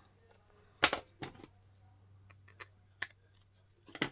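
A handful of separate sharp clicks and taps, the loudest about a second in and again about three seconds in, from craft tools and paper being handled and set down on a cutting mat.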